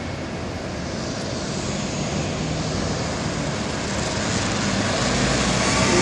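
Road traffic at a busy city junction: a steady mix of engine and tyre noise that grows gradually louder.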